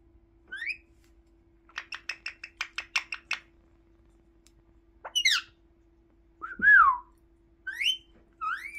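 Indian ringneck parakeet whistling: first a short rising whistle, then a rapid run of about ten clipped notes, then several gliding whistles. The loudest of these, near the end, rises and then falls.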